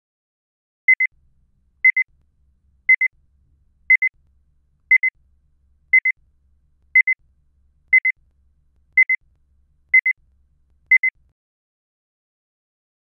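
Timer sound effect: eleven short, high electronic beeps evenly spaced a second apart, counting out the answer time after a question.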